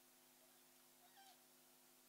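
Near silence with a low, steady hum, and a faint, brief high-pitched sound with a short rise in pitch a little past a second in.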